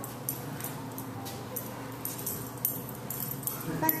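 A German Shepherd Dog searching with its nose at a skateboard's trucks and wheels, making faint scattered clicks and clinks over a low steady background.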